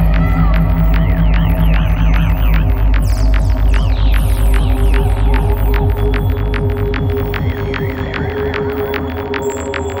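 Dark psytrance track: a deep, throbbing bass drone under fast, regular electronic clicks and repeating chirping synth effects. The low drone fades away in the second half.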